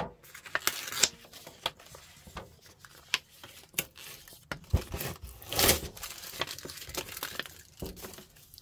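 A paper label band being pulled off a wood-framed galvanized metal sign: irregular crinkling and rubbing of paper, with scattered sharp taps and knocks as the sign is handled.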